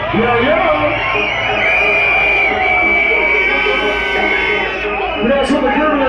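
UK hardcore dance music played loud on a club sound system, with a voice shouting over it. A high note is held for about three seconds in the middle.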